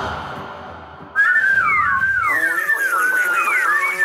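The theme music fades out. About a second in, a person begins whistling: a quick, warbling run of high notes that slide up and down, bird-like.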